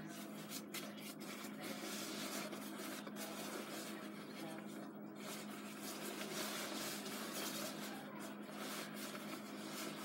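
Jacket fabric rustling and rubbing against a phone's microphone as the phone is handled, in irregular scratchy strokes, over a steady low hum.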